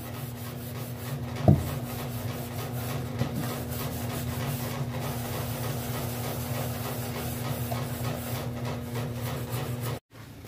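Sponge scrubbing the inside of a small aluminium pan with soapy cleaner: a steady rubbing, with one sharp knock about one and a half seconds in.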